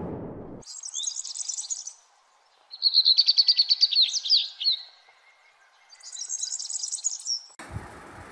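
Birdsong in three bouts: a high chirping phrase, then a rapid trill of quick notes, then another high chirping phrase.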